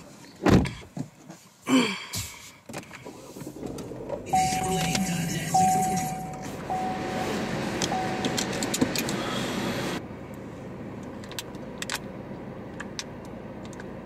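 Car interior sounds: two thumps in the first two seconds, then a car's warning chime beeping four times, about a second apart, over a steady rushing noise. The rushing noise cuts off suddenly near ten seconds.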